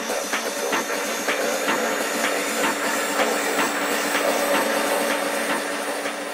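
Techno track in a breakdown with the bass and kick drum gone. Percussion ticks about two and a half a second run over held synth tones, with a high tone slowly rising.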